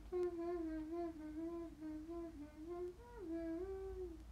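A woman humming a wordless tune with her mouth closed. The melody moves in small steps, jumps up briefly about three seconds in, drops back, and trails off at the end.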